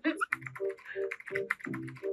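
Rapid, uneven clicking like typing on a computer keyboard, mixed with laughter that comes in short, evenly spaced pulses.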